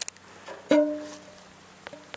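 A metal camp cooking pot knocked once, giving a single clear ringing tone that fades within about a second; a small click near the end.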